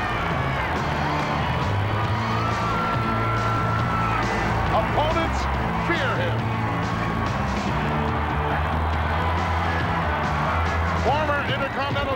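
A wrestler's entrance music with a stepping bass line plays over a loud arena crowd cheering and screaming.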